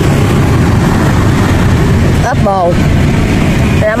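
A steady low engine-like rumble runs throughout, loud and unchanging, with a short spoken phrase a little past halfway.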